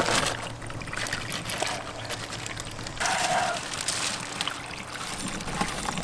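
Water trickling into an aquaponics grow bed of lava rock, with a few light clicks of the rock as a plant is pressed in by hand.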